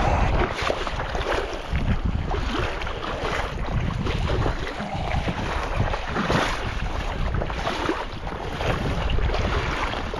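Wind rushing over the microphone with shallow sea water lapping and sloshing close by, in irregular soft surges.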